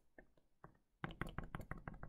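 Pen stylus tapping on a tablet screen while drawing: a few scattered light taps, then about a second in a quick run of taps as dots are put into the sketch.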